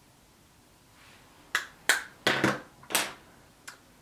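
A quick, irregular series of sharp clicks, starting about a second and a half in, the last one faint near the end, after a near-silent start.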